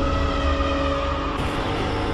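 Channel intro soundtrack: a loud, dense mix of sound effects and music with steady held tones. The sound shifts about a second and a half in.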